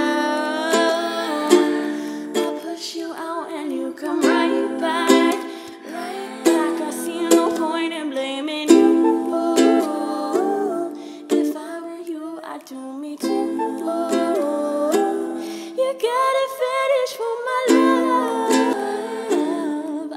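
Lanikai ukulele strummed in a steady rhythm, with a woman's voice singing over it.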